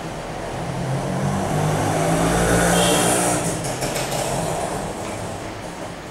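A passing vehicle: an engine hum with a rush of noise that swells to a peak about halfway through and then fades away.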